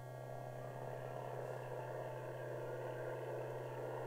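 A steady low mains hum on an old film soundtrack. Within the first second a faint, even drone of a propeller aircraft engine fades in and then holds.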